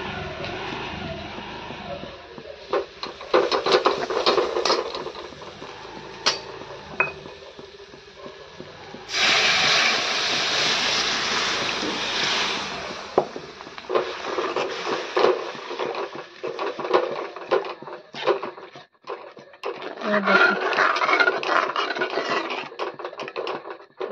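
A metal spoon scrapes and clinks against an aluminium pan as a thick onion-tomato masala gravy is stirred. About nine seconds in there are roughly four seconds of loud sizzling in the hot pan.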